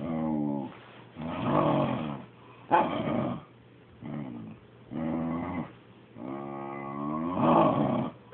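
Dog making a string of growling 'talking' vocalisations, about six grumbles that rise and fall in pitch, the last one the longest. The owner takes this for jealousy of the cat being petted.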